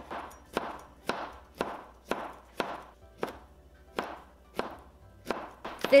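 Chinese cleaver chopping through a tomato onto a plastic cutting board, in even strokes about two a second.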